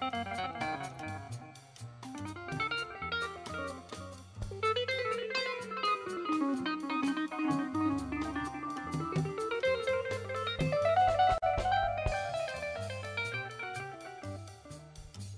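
Live jazz from a small combo of keyboard, upright double bass and electric guitar. A plucked melodic line runs down and back up in quick stepwise notes over steady low notes.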